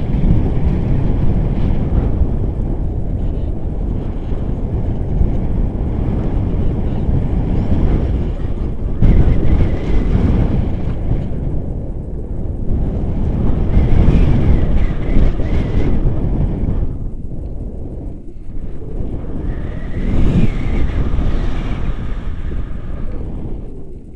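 Wind rushing over the camera microphone of a paraglider in flight, a loud rumble that surges and eases every few seconds.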